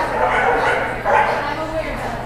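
A dog barking, loudest about a second in.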